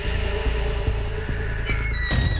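Suspenseful TV drama background score: a sustained low drone with soft low pulses every half second or so. Near the end a shimmering high sound effect comes in and steps downward in pitch.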